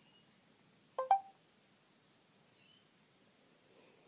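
A phone's voice-input start tone: two quick beeps about a second in, the second higher, signalling that speech recognition has begun listening. Otherwise near silence.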